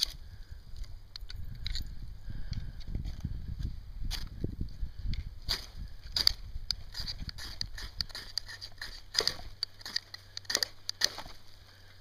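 Knife blade scraping repeatedly along a magnesium fire-starter bar to shave off magnesium for lighting a fire. The rasping strokes come faster and louder in the second half.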